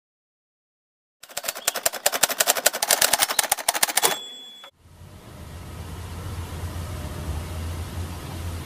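Slideshow sound effect: about a second in, a fast rattle of sharp clicks for about three seconds, ending with a brief high tone, then a steady low hum.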